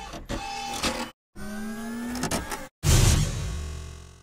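Intro sound effects: a whirring, motor-like tone slowly rising in pitch breaks off abruptly, then a loud low hit comes near the end and dies away over about a second.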